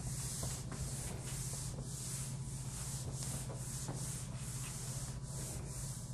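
Cloth wiping a whiteboard clean, a rhythmic rubbing hiss of about three strokes a second, over a steady low hum.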